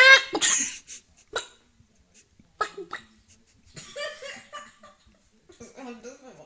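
A young man imitating a chicken with his voice: one loud, high cry at the start, then a few short, separate vocal bursts with pauses between them.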